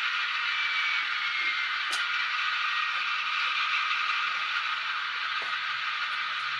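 Steady mechanical whirring of small motors and gears, with a faint whine that glides in pitch and a single sharp click about two seconds in.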